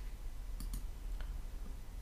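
A few faint clicks of a computer mouse, about half a second and a second in, over a steady low hum of room tone.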